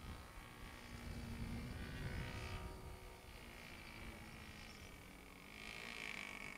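Faint, distant buzz of a radio-control airplane's gas engine in flight, growing louder and bending in pitch near the end as the plane comes closer. A low rumble sits underneath in the first couple of seconds.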